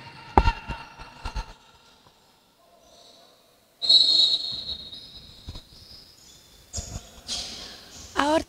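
Basketball bouncing a few times on a hardwood gym floor. About four seconds in, a referee's whistle gives one steady, shrill blast of about a second, which fades in the hall. Near the end there is a short burst of noise.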